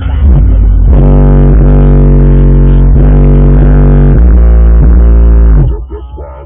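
Two Digital Designs 510 subwoofers playing bass-heavy music very loud, with strong, deep bass notes that change pitch about once a second. The bass drops away sharply just before the end.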